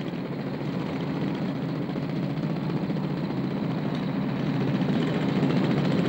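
Pneumatic jackhammers rattling steadily as they break up the street surface, growing a little louder over the few seconds.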